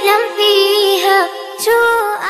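A child's voice singing a melody unaccompanied, a cappella with no instruments, in held notes that slide between pitches.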